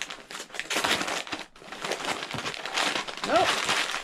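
Gift-wrapping paper crinkling and crumpling in quick, crackly handfuls as a soft present is unwrapped by hand, with a brief vocal sound near the end.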